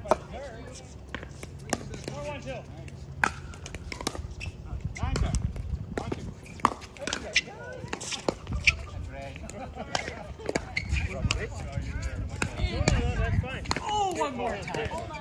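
Pickleball rally: sharp pops of paddles striking the plastic ball and the ball bouncing on the court, at uneven intervals and sometimes several a second, with people talking underneath.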